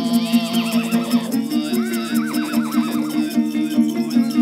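Traditional Altai music: a plucked long-necked lute (topshur) strummed in a fast, even rhythm over a steady low drone. A high, quickly wavering trill sweeps down in pitch, first briefly and then more strongly about a second and a half in, in the manner of an imitated horse whinny.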